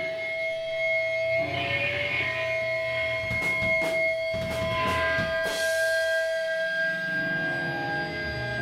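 Electric guitars through amplifiers holding long ringing notes, with a few scattered drum and cymbal hits in the middle, not yet a full steady beat.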